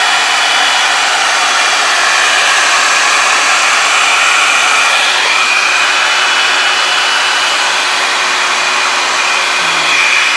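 Hand-held hair dryer running steadily: a loud rush of air with a high whine over it.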